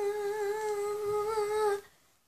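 A girl humming one long, steady note, a drawn-out "mmm" hesitation in mid-sentence that stops shortly before the end.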